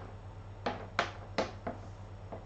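Four sharp taps on wooden floorboards in just over a second, the last one weaker, from a cat pouncing at a feather wand toy dragged across the floor.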